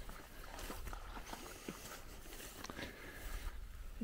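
Faint sloshing and splashing of dogs wading and swimming through muddy water in a rain-filled canal, with scattered small ticks over a steady low rumble.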